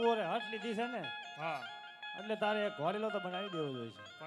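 A man's amplified voice in a sing-song, gliding delivery, with steady held instrument notes behind it.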